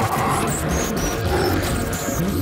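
Robotic wolf-like mecha beast growling, a synthetic cartoon creature effect with a low rumble, over background music.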